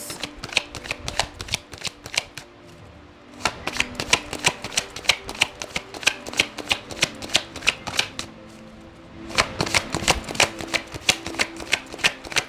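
A tarot deck shuffled in the hands, a quick run of card clicks that pauses briefly about two seconds in and again around eight seconds in. Faint background music sits underneath.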